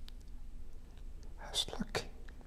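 Quiet room tone with a faint steady hum, then a short breathy vocal sound from a man near the end.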